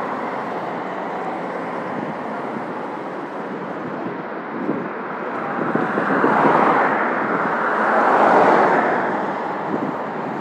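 Road traffic passing close by: a steady rush of tyre and engine noise, swelling as one vehicle drives past about six seconds in and another about eight seconds in.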